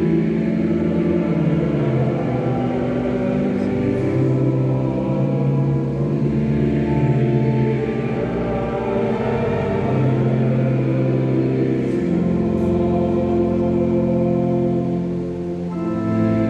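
Pipe organ playing slow, sustained chords that change every couple of seconds.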